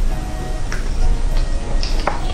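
Close-miked chewing of roast chicken meat, with a few sharp wet mouth clicks, over background music.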